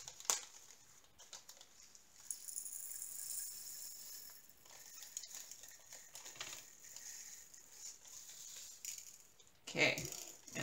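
Small plastic bag crinkling and tiny resin diamond-painting drills pattering faintly as they are poured into a plastic sorting tray, with the rustling strongest about two to four seconds in.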